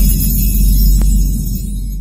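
Intro logo sting: a deep, low boom that rumbles on and slowly fades, with a faint click about a second in.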